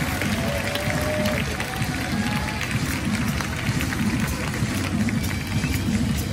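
Stadium public-address music and an indistinct, distant voice carrying across the ballpark over a steady low rumble.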